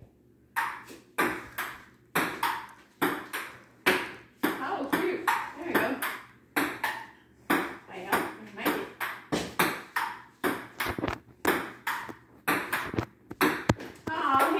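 Table tennis rally: a celluloid ping pong ball struck back and forth by paddles and bouncing on the table, in a steady rhythm of about two hits a second with no break.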